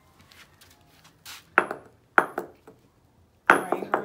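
Metal hammer striking a rock on brick pavers: several sharp blows, each with a short metallic ring, the last one followed by a few quick knocks near the end.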